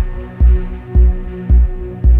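Ambient dub electronic music: a deep kick drum thumping steadily a little under twice a second, three beats here, under a sustained droning synth chord.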